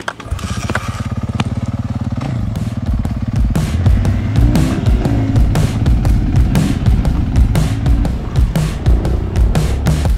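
A small motorbike engine running steadily, then changing pitch as it revs. About two seconds in, a loud music track with a fast, hard drum beat comes in over it.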